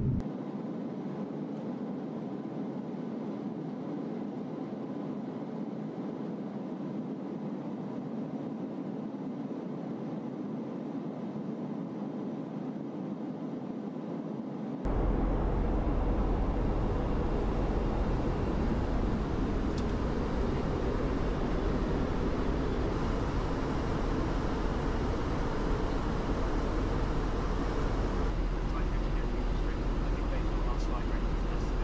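Steady in-flight noise inside an Airbus A330-based Voyager tanker: an even rush of air and engines with no distinct tones. About halfway through it cuts to a louder noise with a deep rumble underneath, as heard on the flight deck.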